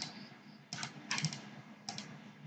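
Computer keyboard and mouse clicking in short clusters of two or three clicks, about four bursts in two seconds.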